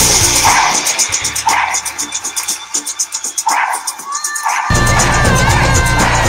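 Upbeat opening theme music with a heavy bass and drum beat. The bass drops out about half a second in, leaving sparse hits and a melody, and the full beat comes back near the end.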